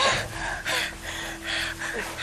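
Heavy, quick gasping breaths from a person, about two a second, the first with a short falling voiced catch.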